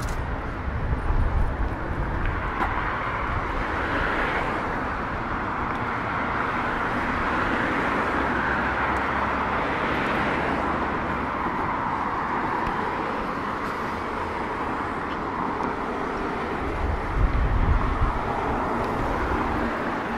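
City street ambience: road traffic passing, its noise swelling and fading, with low rumbles near the start and again near the end.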